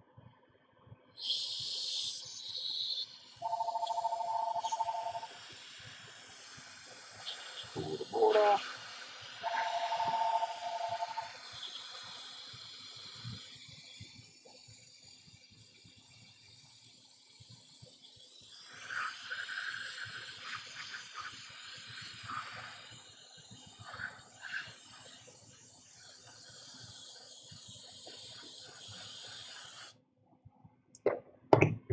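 Hot air rework station blowing onto an iPhone logic board while a replacement Tristar chip is reflowed, its airflow hissing in spells. A steady two-tone electronic beep sounds twice, each about two seconds long, and a brief wavering sound comes about eight seconds in.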